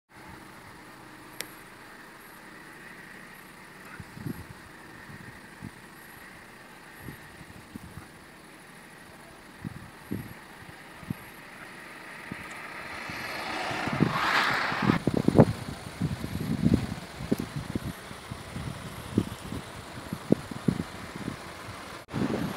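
Car in motion heard from inside: steady road and wind noise that grows louder about halfway through, with a brief rush of hiss soon after and scattered low thumps.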